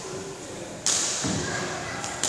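A badminton racket strikes a shuttlecock once with a sharp crack about a second in, one shot in a rally, followed by a dull thud.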